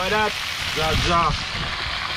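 Whole fish frying in oil in a pan over a wood fire: a steady sizzle, with short bits of men's talk over it.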